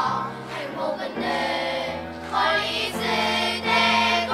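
Children's choir singing, with long held notes that change about once a second.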